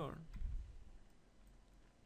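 Clicks from a computer keyboard and mouse in use, picked up by a desk microphone, with a soft low thump about half a second in.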